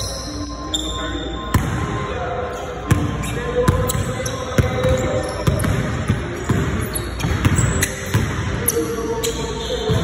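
A basketball dribbled on a hardwood gym floor in repeated bounces about every half second, under background music.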